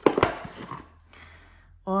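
Cardboard advent calendar door pulled open and a lollipop pulled out of its plastic tray: a sharp snap with a few clicks right at the start, then a short plastic-and-cardboard rustle that dies away within about a second.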